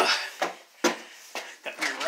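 Footsteps on wooden steps, four separate thumps roughly half a second apart.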